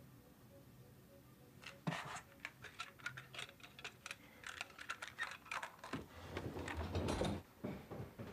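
A faint run of small, irregular clicks and rattles as a cassette tape player that has just broken is handled and its parts and buttons are worked. Heavier low thumps follow near the end.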